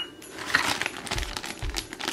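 Hands rummaging through a box of packing tissue and plastic-bagged miniature doll play food: a run of irregular rustling with small light clicks and clinks of hard little pieces.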